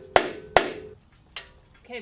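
Two sharp metallic knocks about half a second apart, each ringing briefly, then a lighter click: a stuck part on a Ford 5.0 V8 engine being struck to break it loose. It will not budge because it is still held by bolts hidden under a plate.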